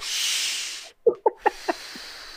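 A hissing breath through the mouth lasting just under a second, mimicking sucking smoke through a straw. It is followed by a few short chuckles and a fainter hiss.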